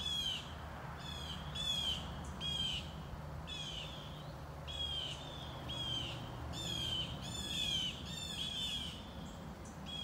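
Birds calling over and over, short harsh calls that drop slightly in pitch, coming about one to two a second and crowding together in the second half, over a steady low rumble.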